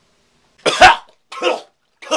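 A man coughing twice just after drinking from a bottle: a loud cough about half a second in and a smaller one a moment later.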